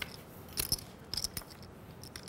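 Poker chips clicking together in a scattered run of short, sharp clicks, some near the start, some about half a second in and some about a second in.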